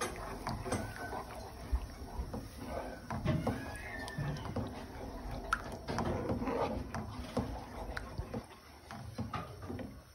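A wooden spoon stirs a thick cornmeal-and-butter mixture in a non-stick frying pan, making irregular scraping and stirring noises against the pan.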